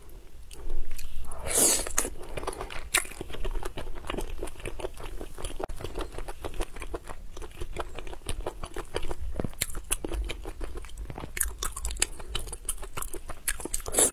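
Close-miked eating of sea snails in chili-oil sauce: wet chewing and biting with many sharp mouth clicks, and a louder burst of noise about a second and a half in.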